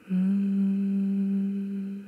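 A voice humming one long, steady low note with a closed mouth. It starts just after the beginning and fades out near the end.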